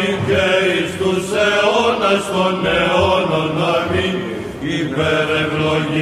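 Byzantine chant (psaltiki) sung by a group of chanters: a melodic line moving up and down over a steady held drone note, the ison.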